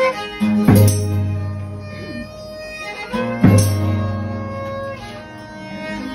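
Folk string ensemble playing: a bowed violin over strummed guitars, with held notes and a strong accent about every three seconds.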